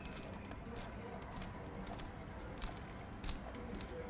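Poker chips clicking: scattered light clicks, irregular and about one or two a second, as players handle their chip stacks at the table.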